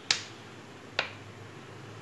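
Two sharp clicks about a second apart, from a plastic sauce bottle being handled just before it is poured.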